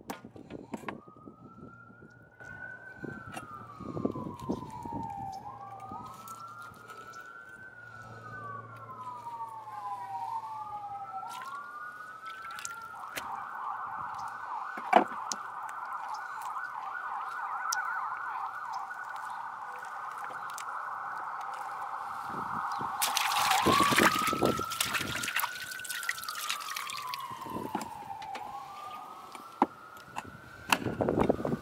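Emergency vehicle siren wailing in slow rising and falling sweeps, switching to a fast yelp for about ten seconds from a little before the middle, then back to the wail. Knife knocks and chopping on a wooden cutting board cut in, with a sharp knock near the middle and a louder burst of chopping during the later part.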